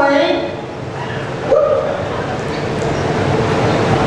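Nightclub audience noise: a steady din of voices with short shouted calls near the start and again about a second and a half in.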